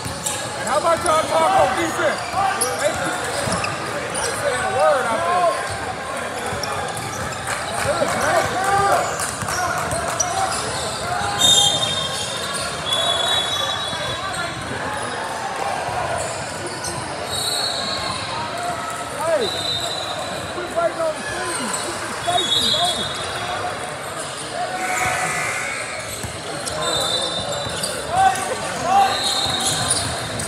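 Basketball game sounds in a gym: a basketball bouncing on the hardwood floor, several short high sneaker squeaks in the second half, and indistinct shouts and chatter from players and spectators, echoing in the large hall.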